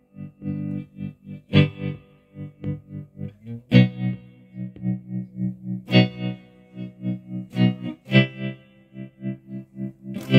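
Electric guitar played through a Zebra-Trem tremolo pedal, set to a rhythmic waveform. Chords are struck about every two seconds, and the pedal chops each ringing chord into a steady pulsing beat of roughly three to four pulses a second.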